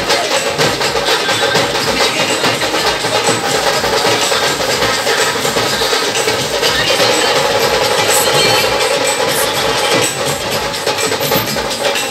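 Loud street band music with a steady drumbeat, playing without a break.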